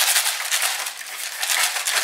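Hand-twisted pepper mill grinding black peppercorns: a rapid, gritty crunching that eases briefly about a second in, then picks up again.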